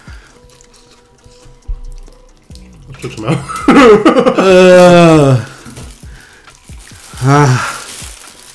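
Men reacting to the burn of a super-hot chip: a sharp hiss of breath about three seconds in, then a long, loud exclamation falling in pitch amid laughter. A shorter laugh comes near the end.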